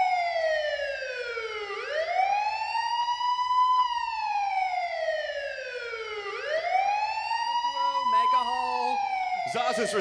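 Police siren wailing, its pitch sliding slowly down and then back up in long cycles, about two full cycles. A voice comes in near the end.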